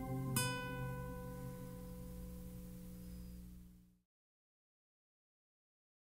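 Acoustic guitar strumming a final chord about half a second in and letting it ring out, fading steadily until the recording cuts off about four seconds in.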